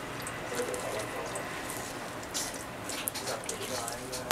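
Steady hiss of a tap running into a stainless steel sink, with a few faint knife clicks on the chopping board near the end as a raw chicken thigh is cut open.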